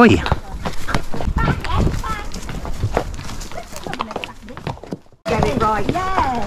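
Several horses' hooves clip-clopping at a walk on a stony track, the shod hooves striking loose stones and gravel in an uneven patter. The sound cuts out for a moment near the end.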